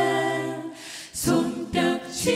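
Mixed ensemble of men's and women's voices singing in close harmony into microphones. A held chord fades out a little past halfway, and after a short gap a new phrase begins about a second in.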